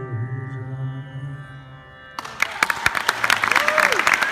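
A man's voice holding a low closing note of raga Bhairavi over a steady drone, wavering slightly in pitch as it fades. About two seconds in, audience applause breaks out suddenly and loudly.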